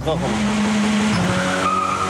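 Dacia Logan's engine pulling hard under acceleration, its note rising at first and then held steady. A high tyre squeal joins near the end.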